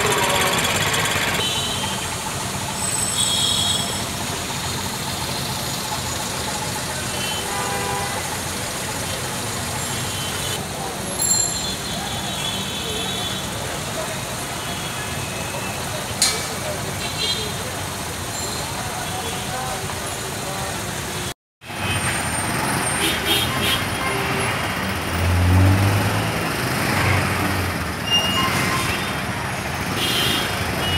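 Steady traffic noise of a congested city street: vehicle engines running in a jam, with people's voices in the background. The sound drops out for a moment about two-thirds of the way through, and afterwards low engine rumbles swell up now and then.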